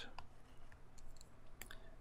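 Quiet room tone with a handful of faint, scattered clicks, typical of a stylus or pen-input device being used on a computer.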